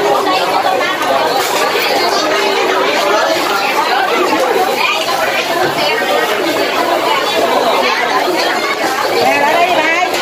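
Many people talking at once: the steady chatter of a busy crowd, no single voice standing out.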